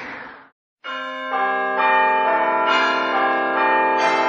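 Bell-like chiming notes in the soundtrack music, coming in about a second in after a brief silence. A new note starts roughly every half second, and each keeps ringing under the next.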